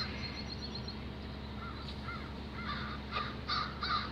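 A bird calling in quick runs of short rising-and-falling notes, about four a second, starting about a second and a half in, over a steady low hum.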